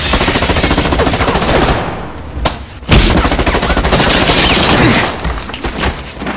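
Submachine gun firing long bursts of automatic fire, with a short break about two and a half seconds in before it opens up again.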